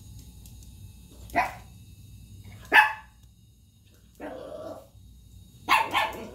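A dog waiting to be fed, barking single short barks about a second and a half apart; the second bark is the loudest. A longer, lower call comes between the last two barks.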